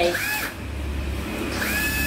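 National EZ6403 cordless drill-driver motor starting about half a second in and running steadily, held in the air with no load.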